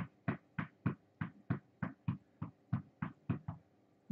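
Feet in sneakers stamping on a rug-covered floor in a fast seated march, an even beat of about three to four steps a second that stops shortly before the end.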